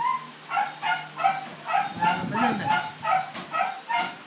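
A baby laughing in a quick string of high-pitched bursts, about three a second.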